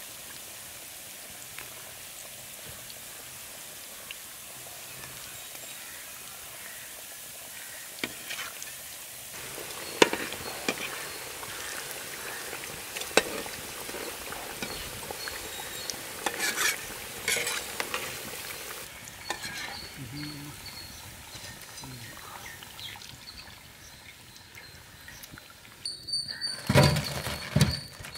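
Hot oil sizzling steadily as noodle-coated potato snacks deep-fry, with sharp clicks of a metal utensil against the pan as they are stirred. The sizzle thins out in the second half, and near the end there is a louder cluster of knocks and rattles.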